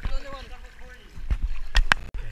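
Pool water splashing and sloshing around a GoPro held at the surface, with sharp knocks on the camera near the end, under children's voices.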